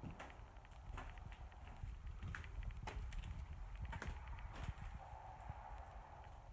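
Slow, irregular footsteps with small knocks and scuffs, faint against a low rumble of camera handling.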